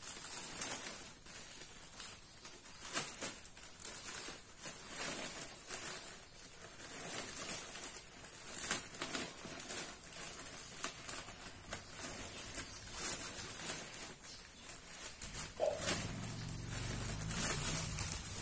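Dry alang-alang (cogon) grass and a clear plastic bag rustling and crackling irregularly as the grass is handled and packed into the bag.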